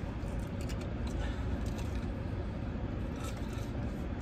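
Steady low hum of an idling car heard from inside its cabin, with faint crunching of someone chewing a crispy fried corn dog.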